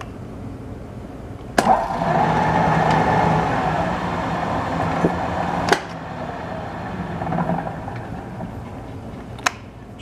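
Machine spindle running a power-tapping cycle. A click about one and a half seconds in starts it driving the tap with a steady hum and whine. A second click after about four seconds switches it, and it runs on more quietly as the tap is backed out in reverse, until a last click shortly before the end.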